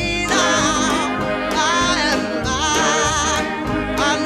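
Gospel song: a singer holding long, wavering notes over instrumental accompaniment.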